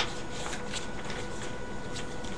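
Paper rustling as the pages of a book are handled and turned, with a sharp rustle right at the start and a few softer ones after, over a faint steady hum.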